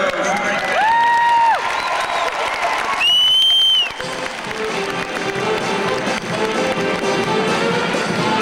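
A Mummers string band playing, with crowd cheering under it. Two loud held whistles cut through: one about a second in, gliding up, held and falling away, and a shriller one about three seconds in.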